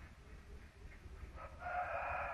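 Near silence, then a faint, drawn-out animal call with a steady pitch that begins about one and a half seconds in.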